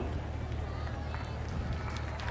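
A pause between a speaker's phrases on a public-address system: a steady low hum with faint background voices.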